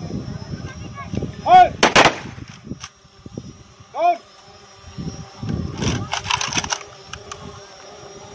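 Ceremonial rifle volleys fired into the air by a guard of honour in salute at a funeral: a single loud shot about two seconds in, then a ragged cluster of shots around six seconds. Loud shouted calls come just before each, about a second and a half in and again at four seconds.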